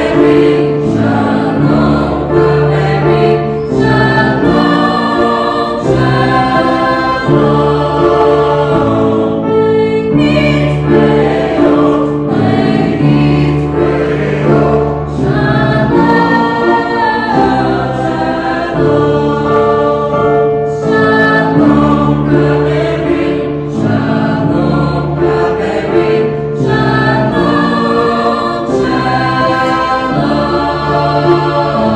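Mixed choir of women's and men's voices singing in harmony, moving through long held chords.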